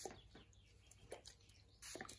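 Near silence: room tone with a few faint, brief ticks.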